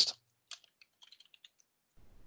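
Faint computer keyboard typing: a short run of light keystrokes as text is typed into a form field.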